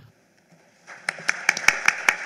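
Audience applause that starts about a second in and grows, many separate hand claps.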